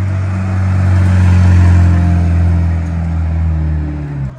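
A car's engine close by, running at a steady low-revving note as the car rolls along the pit lane, its pitch dipping slightly near the end.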